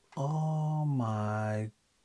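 A man's long, drawn-out exclamation of amazement, an 'oh' held for about a second and a half that drops in pitch about halfway through and breaks off shortly before the end.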